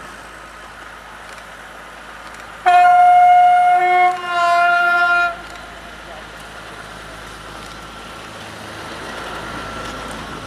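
Narrow-gauge diesel locomotive sounding its horn: one loud blast of about two and a half seconds that drops to a lower note partway through. Before and after it the passing train makes a steady, quieter running noise that grows slightly toward the end.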